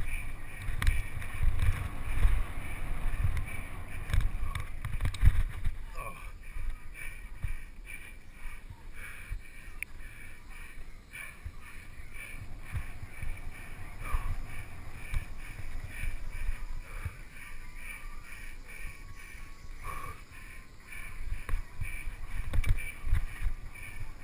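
Mountain bike rolling fast down a dirt singletrack, heard from the bike's own camera: low rumble from wind and tyres over bumps with rattles and clicks from the bike, heaviest in the first six seconds and lighter after.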